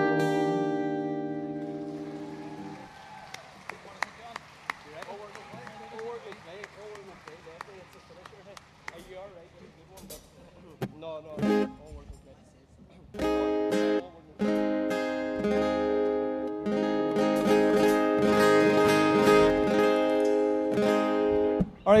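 A band's final chord rings out and fades over the first few seconds, followed by crowd voices and scattered clapping. About halfway through, an acoustic guitar starts strumming loud, steady chords with a short break, running on to the end.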